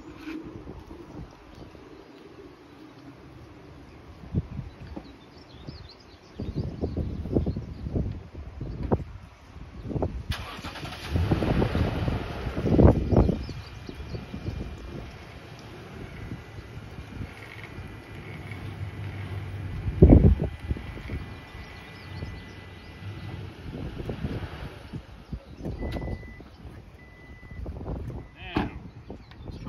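Pickup truck engine started and left running for about fifteen seconds, then shut off. A door chime beeps in short high dashes, and one sharp loud thump stands out partway through.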